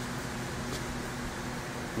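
Steady background hiss with a faint low hum, with no event standing out: room tone.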